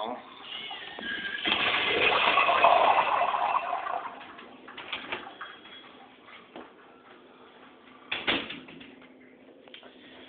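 Kohler urinal flushing through its flush valve: a short whistle, then a rush of water lasting about three seconds that fades away, followed by a few light clicks.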